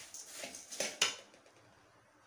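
A metal ladle stirring and scraping in an aluminium kadai, a few strokes with a sharp clink of ladle on pan about a second in. After that the stirring stops.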